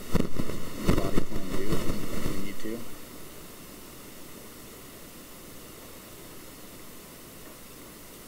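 Muffled voice sounds mixed with a few sharp knocks for about three seconds, then only a steady low hiss.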